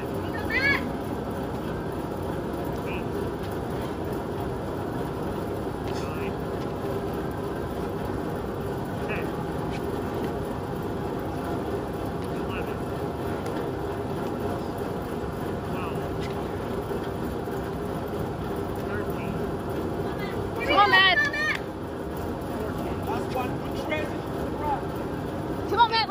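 Large drum fan running with a steady hum and rush of air. A short voice shout breaks in near the end.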